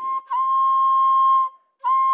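Bamboo transverse flute playing one long held note, a short break about a second and a half in, then the same note again.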